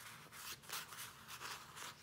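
Faint, irregular rustling and rubbing of paper pages as a handmade junk journal's pages and tucked-in paper ephemera are handled and turned.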